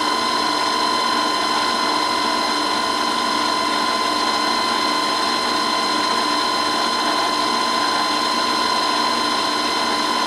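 Three-phase vertical milling machine running steadily on a static phase converter, its spindle and drill chuck turning with a steady whine made of several held tones.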